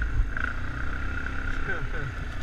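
ATV engine idling with a steady low drone and a thin whine over it. A person laughs briefly at the start.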